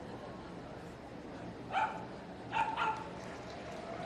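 A small dog barking three times, short and high-pitched: once about two seconds in, then twice in quick succession, over the steady murmur of a show hall.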